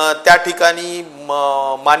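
A man's speaking voice, drawn out into a long held vowel of about half a second near the end.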